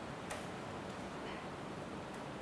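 Quiet room tone in a lecture room, with two faint clicks about a second apart.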